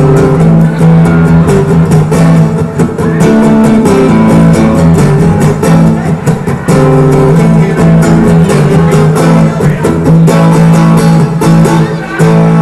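Acoustic guitar strummed in a steady instrumental passage, its chords ringing between the strokes, with a brief dip about six seconds in before the strumming carries on.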